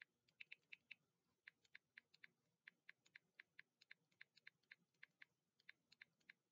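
Faint typing on a computer keyboard: irregular key clicks, several a second, with short pauses.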